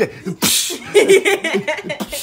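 A sharp, forceful blast of air through the nose about half a second in, a mock snot rocket, followed by laughter.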